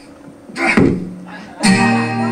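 Acoustic guitar strummed: a shorter sound about two-thirds of a second in, then a full chord struck loudly near the end and left ringing.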